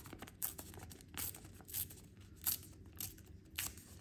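A folded sheet of plain white paper being torn in two by hand along the fold, in several short, quiet rips.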